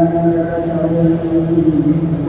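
Imam's chanted Quran recitation in the Maghrib prayer: a man's voice holding one long, drawn-out note at a steady pitch.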